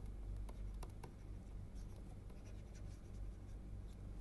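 Stylus writing on a tablet screen: faint light taps and scratches, clustered in the first second and sparser after, over a low steady hum.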